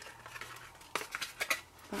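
Stiff cardstock being folded and pressed into a box shape by hand, giving a few sharp crackles and taps about a second in.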